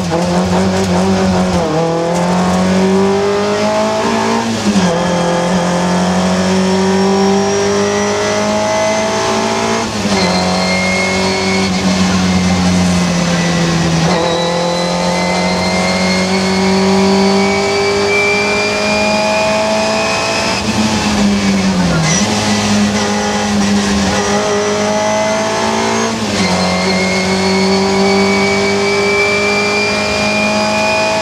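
Rally car engine heard from inside the cabin, revving hard through the gears: its pitch climbs steadily, then drops sharply at each gear change, about seven times.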